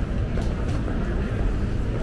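Steady low rumble of urban outdoor background noise, with a few faint clicks.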